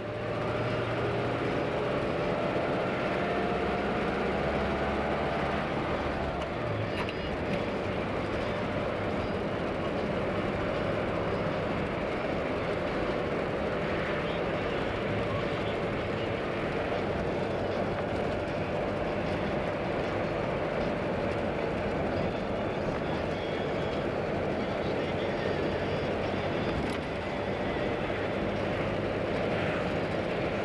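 Engine and road noise of a moving vehicle heard from inside it, the engine note rising over the first few seconds as it gathers speed, then a steady drone.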